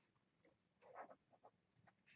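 Near silence: room tone with a few faint, short rustles, one cluster about a second in and a couple more near the end.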